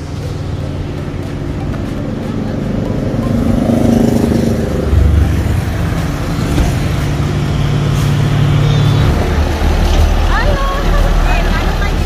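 Road traffic passing close by: a motorcycle's engine, then the deep engine rumble of a heavy truck going past through the second half.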